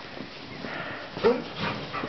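A barn animal close to the microphone making two short vocal sounds a little past a second in, over soft low-level noise.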